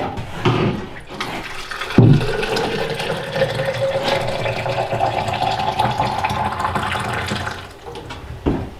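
Water running from the spigot of a stainless steel gravity water filter into a bottle, the pitch rising as the bottle fills. The flow starts with a knock about two seconds in, after a few handling knocks, and dies away near the end.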